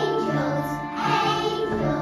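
A group of young children singing together over an instrumental accompaniment.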